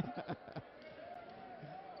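Volleyball being struck and bouncing during a rally in a gymnasium: a few quick thumps in the first half second, then a quieter stretch of hall noise with a faint voice carrying across the court.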